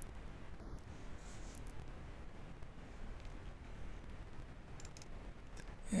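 Quiet room tone: a faint steady hiss with a few faint clicks, one near the start, one about a second and a half in, and a couple about five seconds in.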